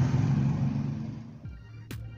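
A low steady rumble with hiss that fades away over the first second and a half, then quiet background music with sharp beat clicks begins.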